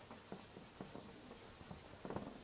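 Felt whiteboard eraser rubbing across a whiteboard in a few short, faint strokes.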